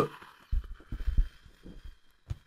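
A person blowing all the air out of their lungs close to a microphone while pressing at their throat: irregular low thumps of breath on the mic, with faint breathy noise.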